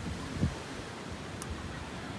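Steady outdoor background noise, with one low thump about half a second in.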